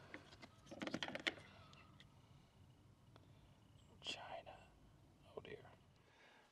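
A low muttering voice with a few faint clicks about a second in.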